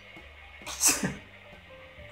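A man's single short burst of laughter, expelled sharply through the nose and mouth, about a second in, over faint background music.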